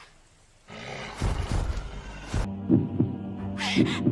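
Anime soundtrack sound design: a low rumble swells and cuts off abruptly about halfway through. It is followed by a steady low drone with heavy heartbeat thumps about a second apart, the kind used to mark sudden fear.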